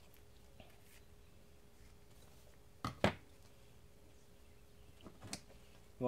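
Scissors snipping the membrane off a beaver oil sack: two sharp snips close together about three seconds in, then a few softer clicks near the end, over quiet room tone with a faint steady hum.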